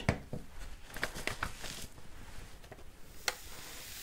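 Quiet tabletop handling noises: a few soft clicks and taps as tweezers are set down and a paper sheet is picked up, with one sharper click a little past three seconds.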